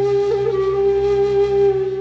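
Background music: a flute holds one long steady note over a low sustained drone.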